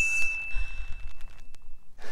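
A correct-answer chime: a single high-pitched ding that starts sharply and holds one steady pitch for almost two seconds before stopping.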